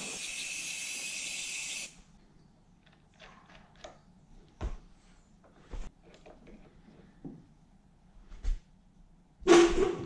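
An aerosol cleaner sprayed in one steady hiss for about two seconds. Then scattered light clicks and knocks from a ratchet spanner tightening a fitting into a billet aluminium housing held in a bench vise, with a louder burst of noise near the end.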